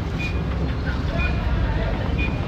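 Steady low background rumble outdoors, with a few faint short high sounds over it.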